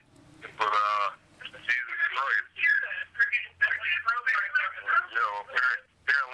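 Speech only: male voices on a voicemail message, played back through a phone's speaker.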